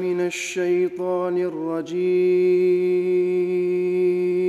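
A man chanting Quran recitation (tilawat) in Arabic, unaccompanied. He sings a winding, ornamented phrase, then holds one long steady note from about halfway through.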